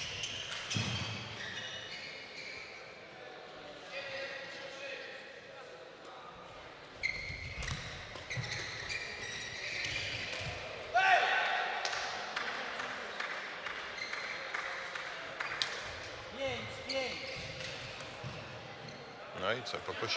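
Badminton doubles rally in a sports hall: sharp racket hits on the shuttlecock and shoes squeaking on the court, starting partway through, over background voices echoing in the hall.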